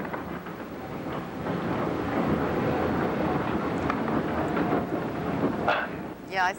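Cog railway train on the Zugspitze line running along its track, a steady running noise heard from inside the carriage.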